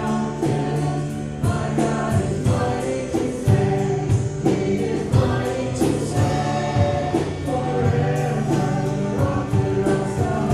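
Voices singing together with instrumental backing and a steady beat: a worship song sung by singers and a congregation in a church.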